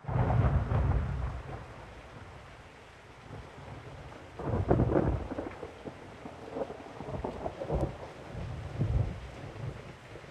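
Thunder rumbling over steadily falling rain. The loudest peal comes right at the start, another strong one about four and a half seconds in, and smaller rumbles follow.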